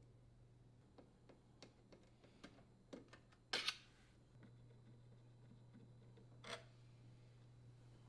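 Near silence with faint, sparse clicks and light handling noises of a hand Torx driver unthreading small screws from a metal dishwasher door panel. There is a louder brief noise about three and a half seconds in and another near six and a half seconds, over a low steady hum.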